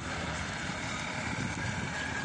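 Steady road noise from vehicles passing on a highway: a low rumble with a hiss, without any distinct events.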